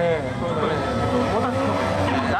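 A drift car's engine revving on track, its note slowly rising, heard under live event commentary.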